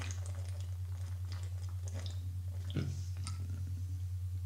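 A person gulping and swallowing a fizzy drink from a glass bottle, faint and wet, with a slightly louder swallow about three seconds in, over a steady low hum.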